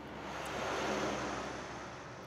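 A soft, even rushing noise like wind, swelling to a peak about halfway through and then fading.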